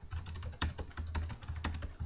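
Computer keyboard typing: a quick, steady run of keystrokes as a string of digits is entered.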